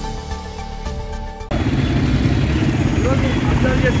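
A short news-channel logo music sting that cuts off abruptly about a second and a half in, giving way to loud, dense outdoor crowd and street noise at a street protest, with a man's raised voice near the end.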